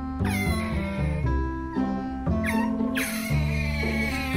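Pet otter giving short, high-pitched squeaking cries that fall in pitch, twice or three times, over steady background music.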